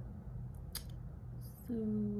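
Two short, sharp clicks a little under a second in, over a steady low hum, with a spoken word starting near the end.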